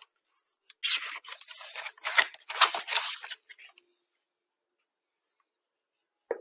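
Paper rustling and sliding as a picture book's page is turned, starting about a second in and lasting about two and a half seconds.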